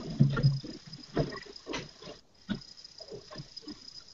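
Faint, muffled voices away from the microphone, with scattered knocks and rustling, over a faint steady high whine.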